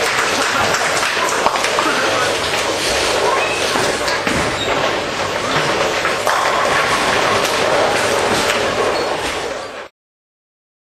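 Ten-pin bowling hall din: balls rolling and pins clattering across the lanes, with many short knocks, under indistinct chatter of the players. It fades and cuts off just before the end.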